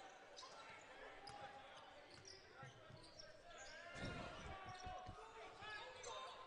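Faint basketball arena sound: crowd murmur, with a few ball bounces on the hardwood court about four seconds in.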